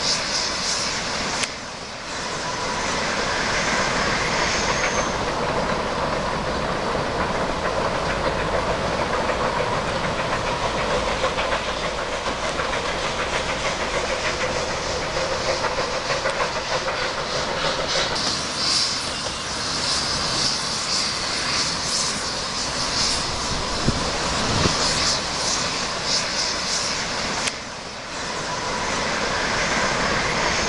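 A steam train running, with wheels clicking over the rail joints and steam hissing. The sound is continuous, with a brief dip about a second and a half in and again near the end.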